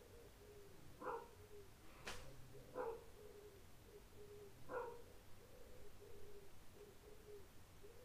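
A dog barking faintly, about three short barks roughly two seconds apart, with a single sharp click about two seconds in.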